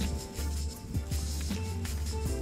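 Background music: sustained chords over a bass line that changes note about every half second, with light drum hits.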